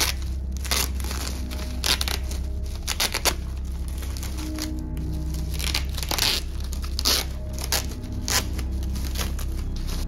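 Plastic bubble wrap crinkling and tearing in irregular bursts as it is pulled off a boxed knife, over background music.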